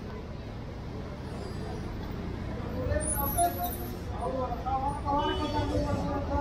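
Street ambience: a steady low traffic rumble with people talking in the background, the voices becoming clearer in the second half.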